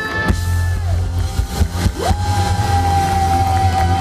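Live band with bass and guitar playing through a PA at a loud outdoor concert, holding a closing chord; about two seconds in a note slides up and is held.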